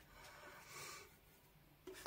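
Near silence, with a faint soft brushing sound in the first second: a watercolour mop brush working paint on a melamine plate palette.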